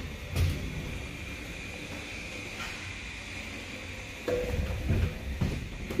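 OTIS elevator car standing at a landing with its doors open: a steady faint high hum, a knock just after the start, then a short tone about four seconds in and a few knocks near the end as the car's floor buttons are pressed.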